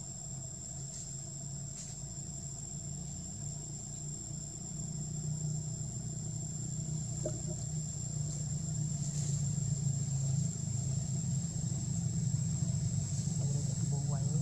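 A steady low engine-like hum that slowly grows louder, under a constant thin high-pitched whine, with a few faint clicks.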